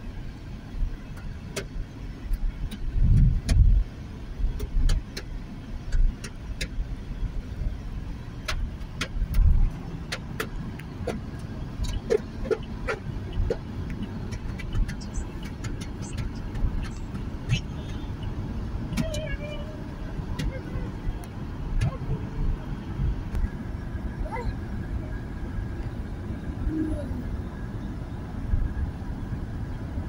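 Road noise inside a moving car on a highway: a steady low rumble of tyres and engine, with scattered small clicks and a few louder low thumps early on.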